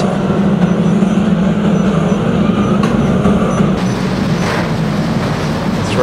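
Engines of a field of saloon stock cars racing together on an oval, a steady massed drone with tyre and track noise.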